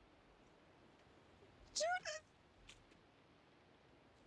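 A woman's short choked sob about halfway through: a brief rising cry broken in two.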